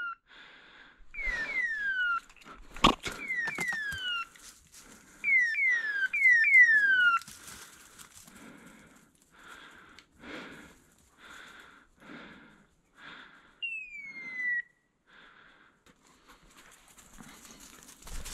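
A hunting dog's beeper collar beeping evenly, about one short beep every three-quarters of a second, over sliding whistles that fall in pitch, in quick runs of two to four during the first seven seconds and once more about fourteen seconds in. A few sharp knocks of brush or handling come about three seconds in.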